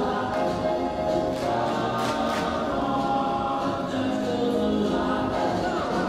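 A mixed high school choir singing together, holding sustained notes that shift in pitch.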